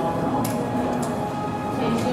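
Indistinct murmur of voices with music playing, and a couple of short light clicks.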